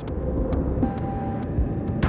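Low, steady rumble of a cinematic sound-design effect, with a few faint ticks.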